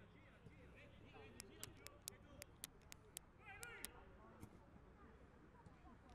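Faint pitch-side sound of a five-a-side football match: distant players calling out, with a run of sharp, quiet clicks through the middle of the stretch.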